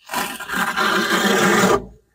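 Plastering trowel scraping wet stucco across a wall in one long rough stroke of nearly two seconds that stops abruptly.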